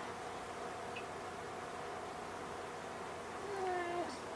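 A steady low hum with a few faint constant tones, like electrical or fan noise in a small room. Near the end comes a brief, soft, voice-like tone that dips slightly in pitch.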